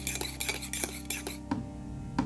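Clinks and scrapes of tableware, crockery or cutlery, in a quick run for about the first one and a half seconds, over background music with steady low tones and a soft slow beat.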